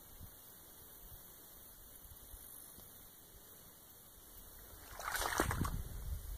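Faint, steady outdoor background hiss. About five seconds in, it gives way to a louder, crackly rustling noise.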